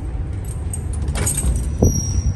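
Steady low rumble of a ship's machinery heard inside the accommodation, with a brief rattle about a second in and a low thump near the end.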